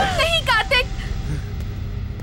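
A woman crying out in several short, high-pitched shouts in the first second, over a low steady rumble.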